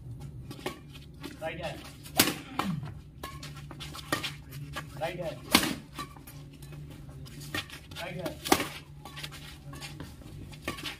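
Badminton rackets striking a shuttlecock during a doubles rally: three sharp, loud hits about three seconds apart, with smaller taps and clicks between them.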